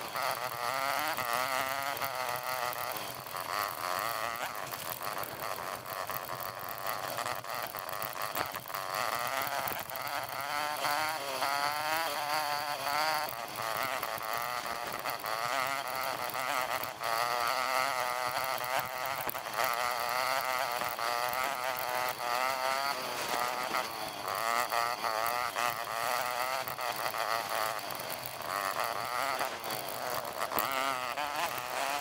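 Off-road motorcycle engine and riding noise sped up fivefold, so the engine becomes a high, warbling buzz that keeps rising and falling in pitch.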